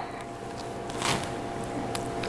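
Low room tone: a faint steady hum, with one brief soft noise about a second in.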